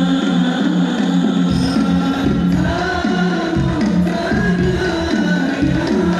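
Sholawat, an Islamic devotional song, sung with musical accompaniment and a steady low beat. The beat drops out for about the first second and a half, then returns under the singing.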